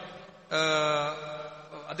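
A man's voice holding one long, steady chanted vowel for about a second and a half, starting about half a second in after a short pause.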